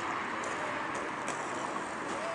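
Steady traffic noise of a city street, an even wash of sound with no single engine standing out.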